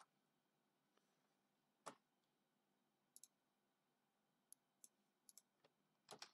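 Near silence broken by a few faint computer keyboard key clicks. The clearest comes about two seconds in and the rest are scattered, sparser than steady typing.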